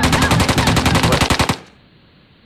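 A long burst of rapid automatic gunfire, the shots evenly spaced. It cuts off suddenly about one and a half seconds in, leaving a faint hiss.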